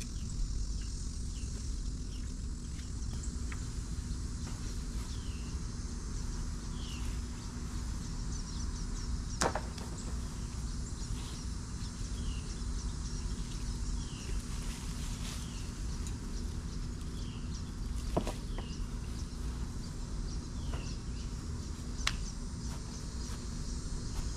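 Summer outdoor ambience: a steady drone of insects over a low rumble, with a bird giving short falling chirps every second or so, often in pairs. A few sharp snaps stand out, one about a third of the way in and two more in the last third, as tomato plants are cut and broken down.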